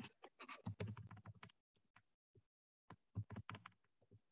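Faint clicking of typing on a computer keyboard, in two short bursts, the second about three seconds in, coming over a video call.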